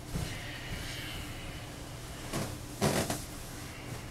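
Steady low hum of a quiet room, with two brief rustling noises about two and a half and three seconds in, the second the louder: bedclothes shifting as a person moves in bed.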